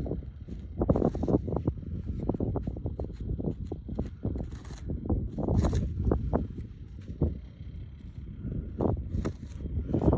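A steel paint scraper shaving thin slivers of dry soil from the side of a seed trench: a rapid run of gritty scrapes and crumbling clods that thins out for a moment about seven seconds in, over a low wind rumble on the microphone.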